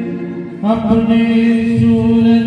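A man singing a slow, chant-like devotional-style melody into a microphone, holding long notes; after a short break he slides up into a new note about half a second in and holds it.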